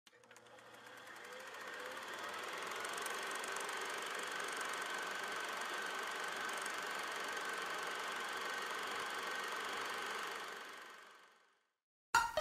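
Logo intro sound effect: a steady whirring, machine-like noise with a faint high held tone, fading in over the first few seconds and fading out near the end.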